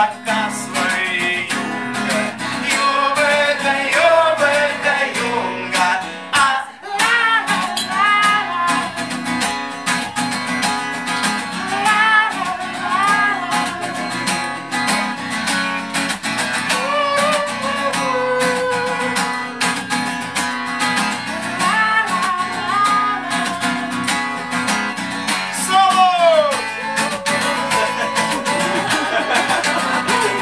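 Acoustic guitar strummed in a steady rhythm, with a man singing a melody over it.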